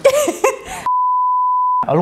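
Censor bleep: a single pure, steady, mid-pitched tone about a second long that cuts in sharply and replaces the speech, then stops.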